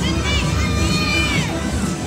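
Riders on a fairground thrill ride screaming and shouting: a short high scream near the start, then a longer one that rises and falls, over loud ride noise.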